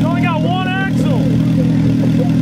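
Honda Integra engine idling steadily. A person gives a high, drawn-out shout in the first second over it.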